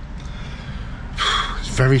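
A man's sharp, audible breath, a little over a second in, over a low steady rumble.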